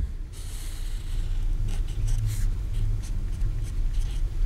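Sharpie felt-tip marker drawing on paper: a series of short, soft scratching strokes as a curved arrow and a small label are drawn, over a steady low hum.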